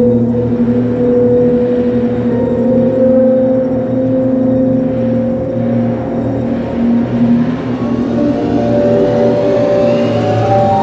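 Film soundtrack of the car-crash sequence: a loud, steady drone of held low tones in which a car engine's hum and the musical score blend together.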